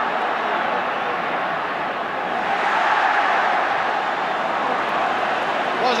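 Football stadium crowd: a steady noise of many voices that swells a little about halfway through.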